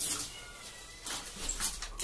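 Plastic wrap on a new washing machine crinkling and rustling as it is handled, in a few short bursts, with faint high tones behind.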